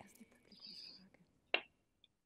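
A faint breathy sound, then a single short click about one and a half seconds in, over otherwise near-silent video-call audio.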